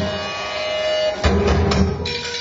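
Live experimental music from a bowed instrument with electronics: sustained ringing tones over a low throb, with a new, louder attack just over a second in.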